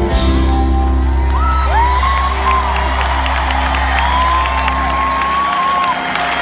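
A rock band's final chord held and ringing out under an arena crowd cheering, whooping and whistling. The low held chord cuts off near the end while the cheering goes on.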